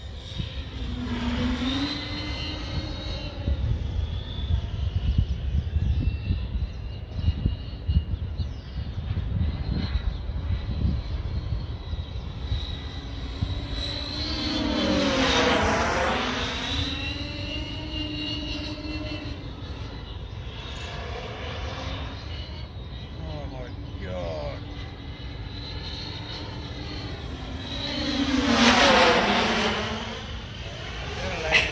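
X-class FPV racing drone's brushless motors and propellers whining steadily as it flies, swelling louder and sweeping in pitch twice, about halfway and again near the end, as it passes by.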